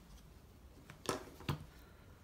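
Plastic spring clamp being handled and set down on the workbench: a faint click, then two sharp clacks close together just past a second in.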